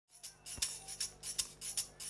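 Light percussion from a live band playing an even beat on a shaker- or tambourine-like rattle, roughly two or three strokes a second, as the song starts.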